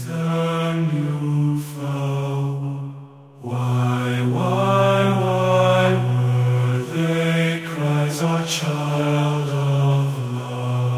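AI-generated chant-like vocal music: long held, wordless sung notes over a steady low drone, with a brief break about three seconds in.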